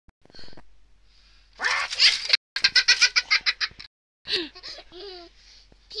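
A small child laughing: a loud burst, then a rapid string of short ha-ha pulses, about eight a second, followed near the end by a few shorter vocal sounds that rise and fall in pitch.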